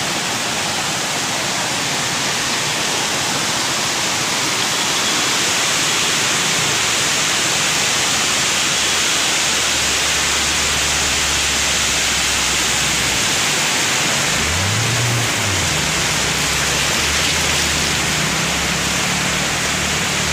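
Steady rushing of floodwater across a street with rain falling, a dense even hiss. A low hum comes in about halfway, with a short rise and fall in pitch about three quarters through.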